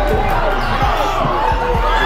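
Basketball dribbled on a hardwood gym floor, repeated thumps about three a second, over crowd chatter and background music.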